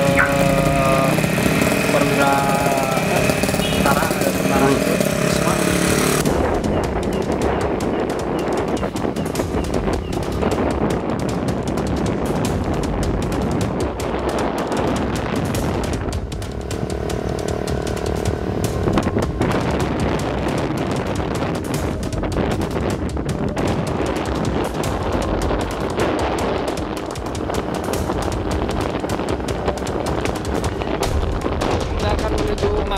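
For the first few seconds, voices talk over street noise with motors running. After a cut, wind rushes and buffets the microphone over the engine and road noise of a vehicle driving along a street. A brief tone sounds about halfway through.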